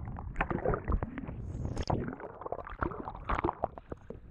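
Underwater camera sound of a freediver swimming upward: muffled water gurgling and bubbling from arm strokes, with irregular knocks and a low rumble against the camera housing.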